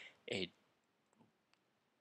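One short spoken word, then a quiet stretch with two faint clicks, about a second in and again half a second later.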